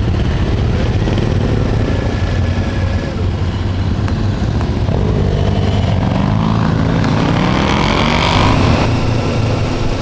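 Motorcycle engine heard from the rider's helmet camera, running steadily low at first. From about halfway through it rises in pitch as the bike pulls away and accelerates.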